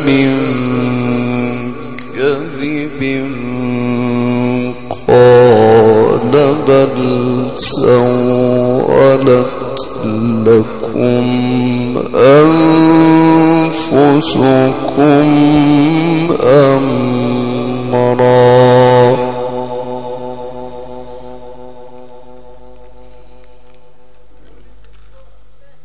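A male Quran reciter chants Quranic verses through a microphone and PA. He holds long, ornamented notes that bend up and down between breaths. Near the end his last long note stops and dies away in a trailing echo.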